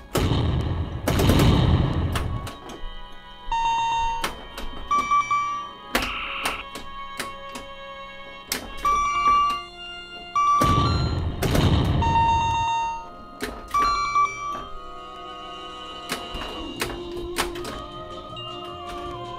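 Bally Star Trek pinball machine in play through its custom sound board: background music with short electronic bleeps, many sharp mechanical clacks from the playfield, and two long noisy explosion sound effects, one about a second in and one past the middle.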